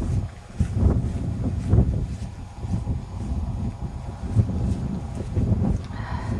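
Wind buffeting the microphone in gusts, with a few scattered soft thuds.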